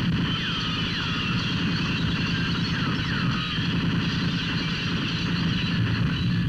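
Movie shootout sound effects: sustained heavy gunfire with a dense rumble, objects being shot apart, and several high falling whistles like bullet ricochets, around half a second in and again around three seconds.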